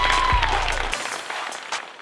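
Audience applauding, fading away over the two seconds.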